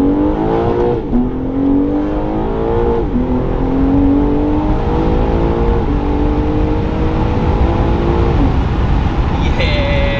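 BMW G80 M3's twin-turbo inline-six with an aftermarket midpipe, heard from inside the cabin under hard acceleration. The engine note climbs and drops sharply at each quick upshift, four times in about six seconds, then holds a steady note and falls away near the end as the throttle is released.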